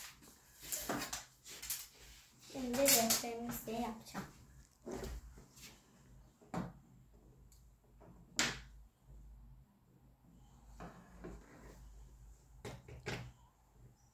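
Sparse clicks and knocks of a plastic ruler and Lego bricks being handled on a wooden tabletop, the sharpest about six and a half and eight and a half seconds in, with a pair near the end. A child's voice is heard briefly about three seconds in.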